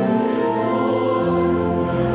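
Church choir singing a hymn in sustained chords, accompanied by pipe organ.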